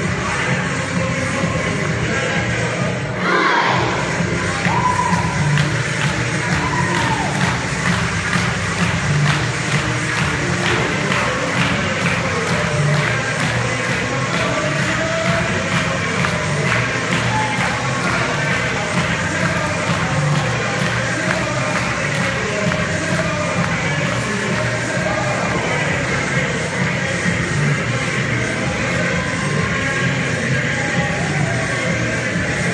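Loud dance music with a steady beat playing over a hall's sound system, with an audience cheering and children shouting along. A few seconds in the bass briefly drops out, then the music comes back louder.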